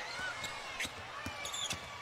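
Basketball being dribbled on a hardwood court, a string of bounces over steady arena crowd noise, with short high sneaker squeaks a little past halfway.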